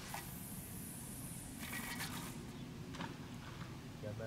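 Fishing line hissing off the reel spool and through the rod rings as the cast rig flies out, stopping about two and a half seconds in. A sharp click follows about three seconds in.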